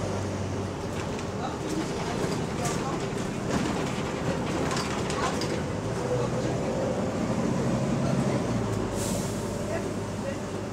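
Inside a moving double-decker bus: the diesel engine drones steadily under road noise, with occasional short rattles and knocks from the bodywork. The engine note grows stronger about six seconds in and drops away near the end.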